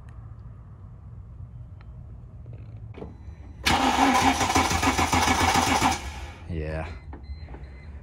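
Starter motor cranking the Mercedes SLK320's 3.2-litre V6 for about two seconds, starting a little over three seconds in, with an even pulse and no catch. It is a crank-no-start that the mechanic puts down to the fuel pump.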